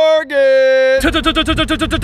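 Very loud, drawn-out high-pitched yelling: a long held cry, a brief break, a second held cry, then a rapid pulsing cry about halfway through.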